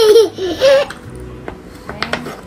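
A young child's high-pitched laughter lasting about a second, followed by a few light clicks of wooden puzzle pieces being handled.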